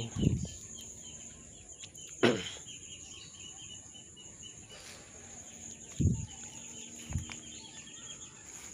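Outdoor garden ambience: a steady high-pitched insect drone, a bird's quick run of short high chirps starting about two and a half seconds in, and a few low thumps, the loudest about two seconds in.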